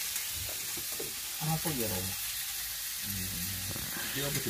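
Thin slices of meat sizzling steadily on a grill pan over a portable gas stove.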